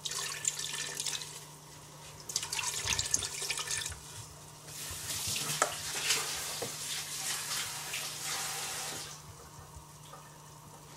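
Chicken stock poured from a carton into a stainless steel stockpot, the liquid splashing into the pot. It comes in three pours, with short breaks about one and a half and four seconds in.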